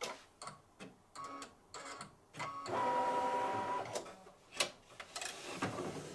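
Computerized embroidery machine stitching a placement line, the needle clicking unevenly. About three seconds in, a motor whirs for about a second as the machine stops and drives the hoop to a new position. A few separate clicks follow.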